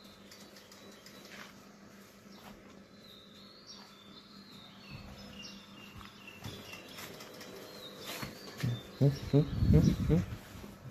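Faint, short bird chirps in a quiet outdoor background, then a brief loud, choppy sound in the last second.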